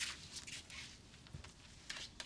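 Faint, brief rustles of hands brushing cut hair off a neck and a haircut cape, a few soft touches over quiet room tone.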